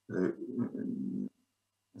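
A person's voice: a brief spoken sound running into a drawn-out hesitation sound of about a second at a steady pitch, in the middle of a sentence.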